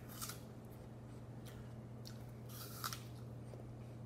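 Crisp raw apple being bitten and chewed with open crunching: a loud crunch about a quarter second in, softer chewing, then a second sharp crunch near the three-second mark.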